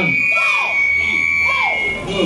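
A steady high-pitched tone, sinking slightly in pitch, held for about two seconds and cutting off near the end: microphone feedback through the public-address system. Two shouted calls from the karate drill are heard under it.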